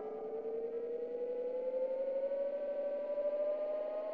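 Sustained synthesizer tone, rich in overtones, gliding slowly and steadily upward in pitch: the closing drone of an electrofolk track.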